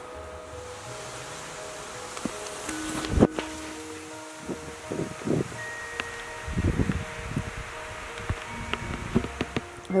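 Soft background music with long held notes over a steady hiss of wind and rain in the trees. A few low rumbles of wind gusts come through in the middle, and there is one sharp knock about three seconds in.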